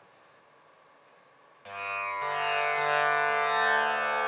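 Tanpura tuned to D, its strings plucked one after another: the first sounds about a second and a half in, and two lower strings follow. Each note rings on, and the notes blend into a sustained drone with many ringing overtones.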